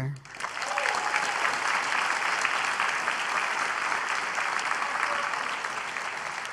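Audience applauding: steady clapping that swells in just after the start and eases off slightly toward the end.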